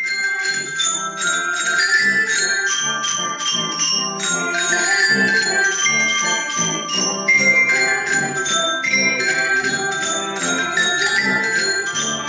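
Several children's glockenspiels played together with mallets: a quick, continuous stream of bright, ringing metal-bar notes forming a tune.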